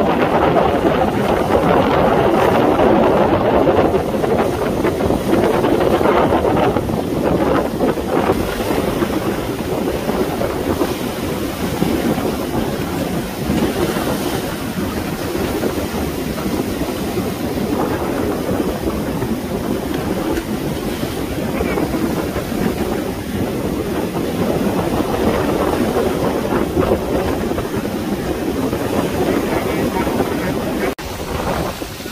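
Rough sea waves breaking and washing around a swamped boat in rocky shallows, with strong wind buffeting the microphone: a continuous loud rushing that rises and falls with the surges.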